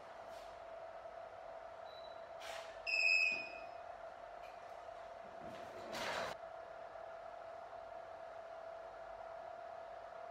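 A steady electrical hum with a short electronic beep about three seconds in, and two brief rushes of noise, one just before the beep and one about six seconds in.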